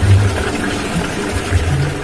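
Polytron twin-tub washing machine running with a low, uneven motor hum while water drains out through its drain hose.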